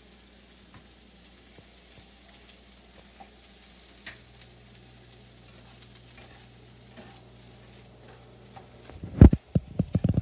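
Rice frying with a faint sizzle in a nonstick frying pan, with light scattered taps of chopsticks stirring it against the pan. Near the end comes a run of loud thumps close to the microphone.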